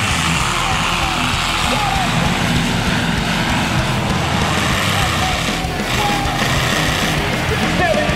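Loud rock soundtrack with distorted guitars and vocals, with demolition-derby car and motorhome engines running beneath it.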